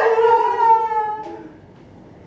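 Voices holding one long final sung note that dips slightly in pitch and fades out about a second and a half in, leaving the room quiet.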